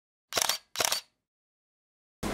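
Two short, sharp sound-effect bursts about half a second apart, each fading quickly, like a pair of camera-shutter clicks.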